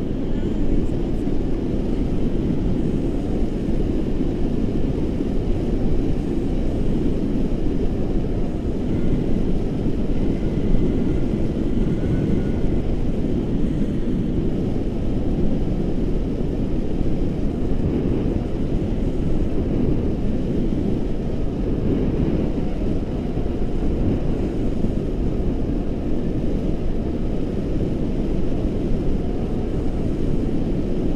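Wind from the paraglider's flight rushing over the handheld camera's microphone: a steady low rumble.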